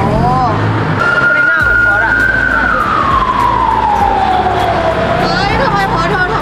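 A siren wailing: one high tone that comes in about a second in, holds, then falls slowly over a few seconds and starts to rise again near the end.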